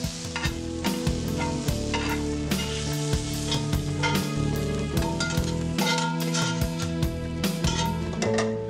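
Trout lily corms and greens sizzling in a hot cast iron skillet, with steel tongs clicking and scraping against the pan many times as they are turned and lifted out. Steady musical tones run underneath.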